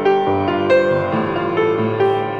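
Grand piano playing alone, a new chord struck about every half second, each ringing on into the next.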